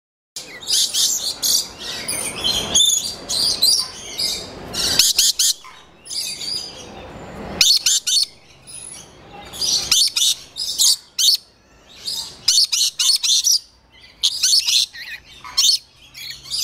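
Lorikeets calling close by: shrill, rapid screeching chatter that comes in clusters of short calls, with brief lulls between the clusters.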